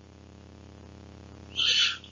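Steady low hum of room tone from the presenter's microphone, then near the end a short, sharp intake of breath before he speaks again.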